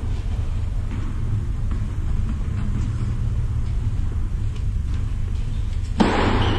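Steady low rumble in a large indoor hall, with a few faint taps and clicks over it.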